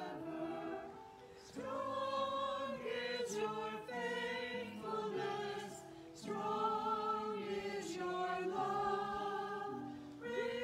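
A small group of voices singing a hymn in parts, in phrases of held notes with short breaths between them, about a second in and again around six seconds.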